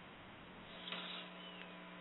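Faint steady hum on a telephone-bandwidth radio line, with several faint steady tones joining about two-thirds of a second in.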